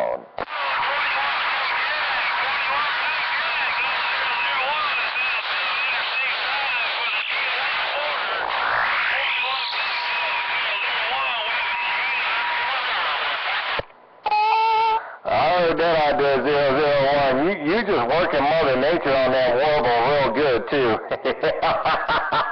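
CB radio receiver audio from a crowded channel: several garbled stations talking over one another, with a steady whistle in two stretches and a rising sweep about nine seconds in. The signal drops out briefly about fourteen seconds in, then a single distorted, unintelligible voice comes through.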